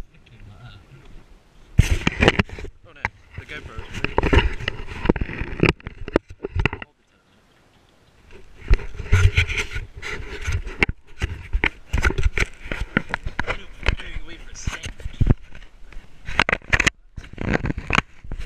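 Handling noise on an action camera: a sailing glove rubs, scrapes and knocks against the housing, giving a dense run of thumps and scrapes. The sound drops out almost completely for about a second, seven seconds in.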